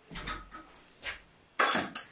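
Brief handling noises: a soft low thud at the start, a faint tick about a second in, and a short, sharp, hissy rustle near the end.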